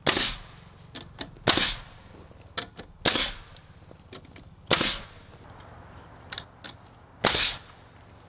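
Pneumatic framing nailer driving nails into lumber: five sharp shots about a second and a half apart, each with a brief tail, with lighter clicks and knocks between them.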